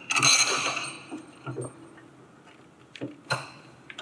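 Small metal mounting screws clinking together as one is taken up: a short bright jingle at the start, then a few faint clicks of metal hardware being handled.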